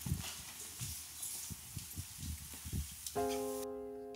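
Footsteps thudding on a stage at walking pace, about two a second, over faint room hiss. A little past three seconds in, a piano chord starts and rings on: the intro of the next song.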